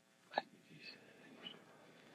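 Quiet room with one short vocal catch from a person's throat, like a hiccup, about a third of a second in, followed by a few faint soft sounds.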